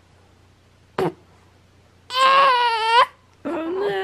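An eight-week-old baby on his tummy gives one loud, wavering cry lasting about a second, about halfway through, followed by a shorter, lower vocal sound near the end.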